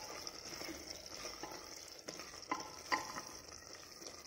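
A spoon stirring chicken and potato masala in a metal pressure cooker, scraping and clicking against the pot, the loudest knocks about two and a half and three seconds in, over a steady sizzle of the masala frying.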